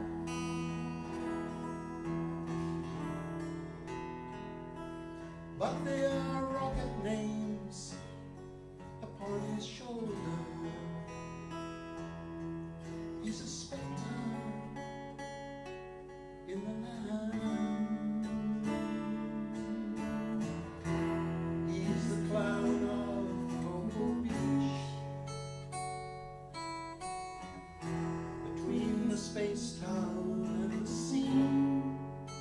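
Two acoustic guitars played together, accompanying a woman singing a folk song.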